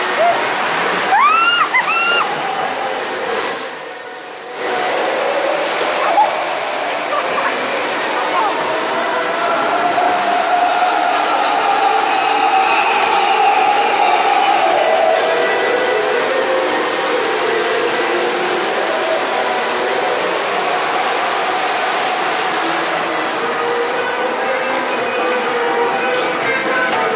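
Steady rush of water in a log flume ride's channel, with indistinct voices mixed in. About a second in come a few short rising squeals, and the rush briefly drops away around four seconds in.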